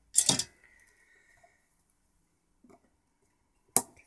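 Quiet handling at an electronics soldering bench: a brief hiss about a quarter second in, then a sharp single click just before the end as flush cutters are brought to the circuit board to trim component legs.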